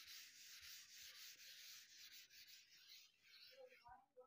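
Faint rubbing of a sponge whiteboard duster wiping marker off a whiteboard in quick repeated strokes, dying away shortly before the end.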